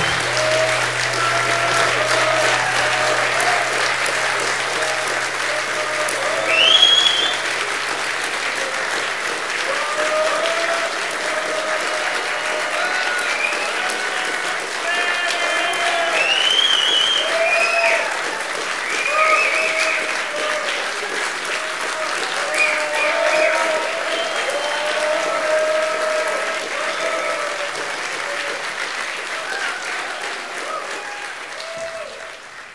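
A theatre audience applauding steadily, with cheers and whistles rising above the clapping.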